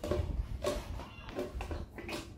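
Plastic blender lid being pressed down and fitted onto the jar, with low handling bumps.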